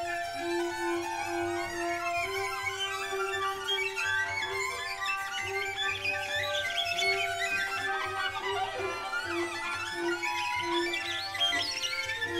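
Bowed string quartet of violin, viola, cello and double bass playing improvised music: held tones and one note repeated in short bow strokes, with scratchy high bow sounds and sliding pitches growing from about four seconds in.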